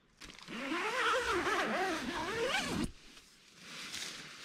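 Tent door zipper being unzipped in one long pull, its buzzing pitch wavering up and down with the speed of the pull, and stopping abruptly about three seconds in.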